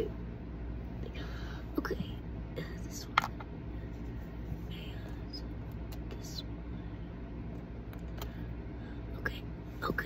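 Quiet handling sounds: a few faint small clicks as a metal hair clip is worked against cotton swabs, with soft breathy whispering over a low steady room hum.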